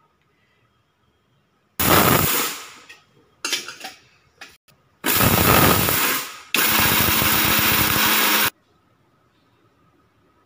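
Electric mixer grinder with a steel jar pulsed on roasted dals and dried red chillies for a coarse grind: several short bursts, each dying away as the motor winds down after switch-off. Then comes a last steadier run of about two seconds that cuts off abruptly.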